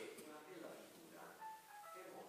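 A man speaking faintly, with a short melody of single high notes stepping up and down in pitch in the second half.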